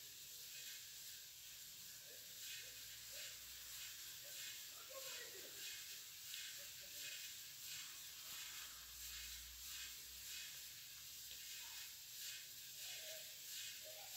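Farfalle pasta in a creamy sauce being stirred in a pan over the heat while it cooks: faint, repeated soft scrapes of the spoon over a low steady hiss.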